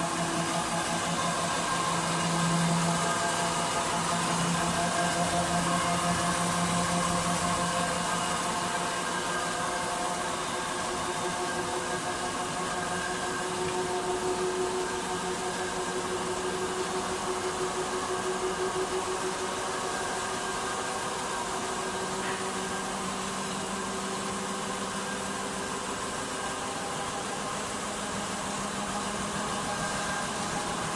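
Servo-driven paper slitting and rewinding machine running steadily: a machine hum with several steady tones over a constant hiss, a little louder in the first few seconds.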